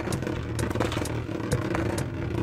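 Beyblade Burst Heaven Pegasus spinning top whirring steadily as it spins on a plastic stadium floor, with many small clicks and ticks as it moves.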